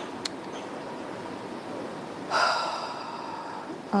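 A person's short, sharp breath, loud and fading within half a second, about two seconds in, over a steady background hiss, with a faint click just after the start.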